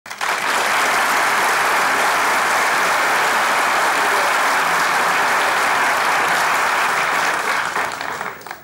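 A large live audience applauding steadily, starting almost at once and dying away just before the end.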